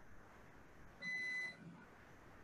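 A single electronic beep: one steady tone about half a second long, about a second in, over faint room noise.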